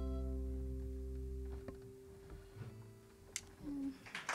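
Final chord of an acoustic string band (acoustic guitar, mandolin, fiddle and upright bass) ringing out and slowly fading, the low bass notes stopping about a second and a half in. Then a near-quiet stretch with a few small clicks.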